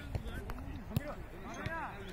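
Football kicked in passing play: two sharp thuds, about half a second and a second in.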